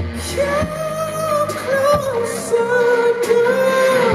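Live R&B/pop band performance with a male vocalist singing long, sliding held notes without clear words, heard through the festival PA.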